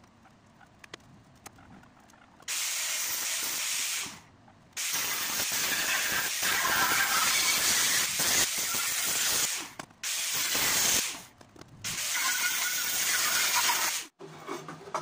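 A hand-held power tool worked against an aluminium fuel tank, giving a steady hiss that starts and stops abruptly in four bursts, the first a couple of seconds in.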